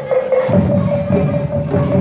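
Traditional silat accompaniment: a serunai holds a long reedy note over fast gendang drum strokes. The drums pause briefly at the start and come back in about half a second later.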